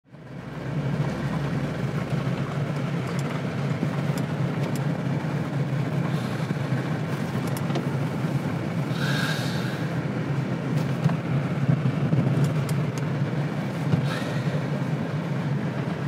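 Steady low road and engine drone of a car driving, heard from inside the cabin. A brief higher-pitched sound comes about nine seconds in.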